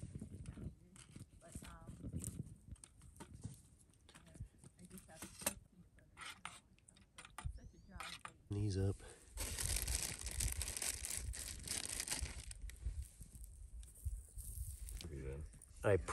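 Small wood fire crackling and ticking in a folding steel camp stove as sticks are poked into it. Partway through, sausage patties go onto the grill and a sizzling hiss runs for a few seconds.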